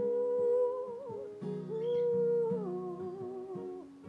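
A woman humming a slow wordless melody in long held notes over a played acoustic guitar. Her voice holds two long notes, then drops to a lower phrase about two-thirds of the way through.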